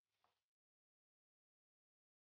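Near silence: an empty soundtrack, with only a very faint brief blip in the first half second.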